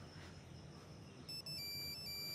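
Quiet room tone, then about a second and a half in a high electronic beeping tone starts, broken by short gaps.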